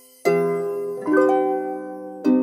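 Background music: plucked-string chords, one struck shortly after the start and another about a second in, each ringing out and fading.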